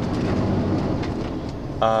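Inside the cab of a MAN TGX lorry on the move: steady low engine drone with road and tyre noise.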